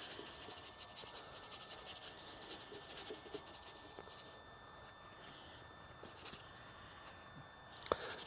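A stiff bristle brush scrubbing thin oil paint onto a painting panel, a faint rapid scratching that stops about four seconds in, followed by a couple of short strokes.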